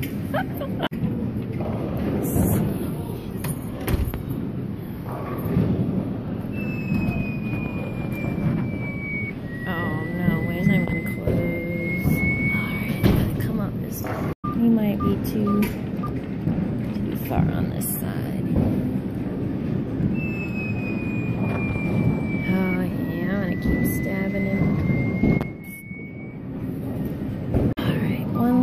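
Arcade background of machine music and chatter, with a thin electronic tone that falls for a few seconds and then rises, heard twice.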